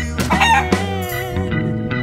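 A rooster crow sounds over pop-song backing music in the first second, followed by a long, wavering held note.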